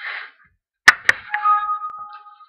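A few sharp knocks in quick succession, the first the loudest, followed by a steady ringing tone of two pitches, like a chime.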